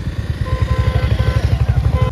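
Motorcycle engines idling, a steady low throb. From about half a second in, a steady higher tone sounds over it.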